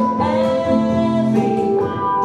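A woman singing over acoustic guitars and an electric guitar in a live rock-ballad arrangement, holding each sung note.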